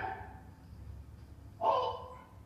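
Martial-arts kiai shouts during jodo kata: the tail of one shout right at the start, then a second short, sharp shout near the end.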